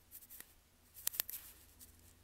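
A few irregular light clicks and taps, sharpest about a second in, with a faint background hum.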